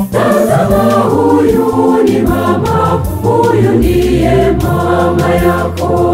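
Choir singing a Swahili hymn in several parts over held organ bass notes.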